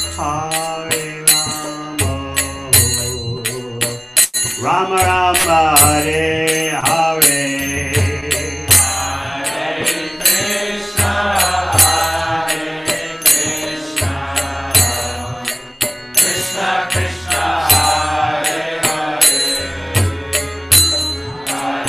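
A man singing a devotional Vaishnava mantra chant into a microphone, his voice held and bending in long melodic phrases, with small hand cymbals clicking a quick, steady beat.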